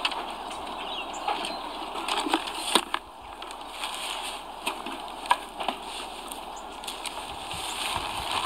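Lakeside outdoor ambience: a steady hiss with scattered small clicks and knocks.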